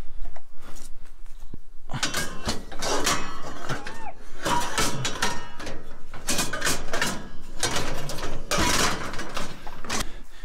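Scrap metal clanking, knocking and scraping as a metal frame is forced into a pickup bed heaped with scrap, with a short squeak of metal rubbing about four seconds in.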